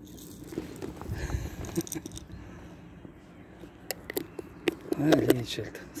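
Cat eating dry kibble off paving stones: a few faint, sharp crunches scattered over the last few seconds.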